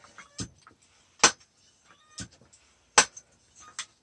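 High-pressure hand pump being stroked to pump air into an air rifle's gas ram: a sharp metallic clack about every second and three-quarters, with a lighter click between each.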